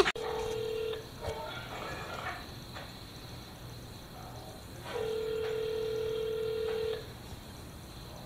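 US telephone ringback tone through a smartphone's speaker: a steady tone that stops about a second in and sounds again for two seconds from about five seconds in, the ringing on the line while the call waits to be answered.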